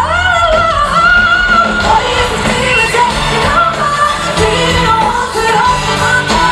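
Live pop-rock concert music: a female lead vocalist sings a melody with held, bending notes over a loud amplified band with electric guitar and a horn section.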